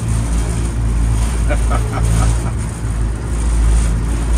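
Engine of an amphibious duck tour boat running steadily as it cruises on the water, a low even drone heard from inside its open passenger cabin.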